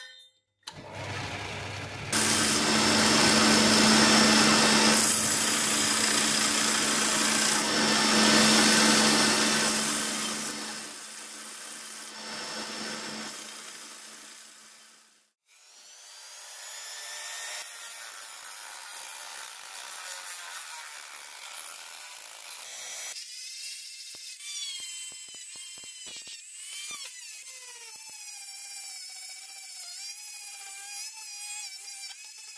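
Bench belt sander running with a steel blade pressed against the belt, then the motor spinning down and fading out about halfway through. After that, a small handheld rotary tool with a sanding drum whines as it grinds a cast brass handle piece, its pitch wavering under load.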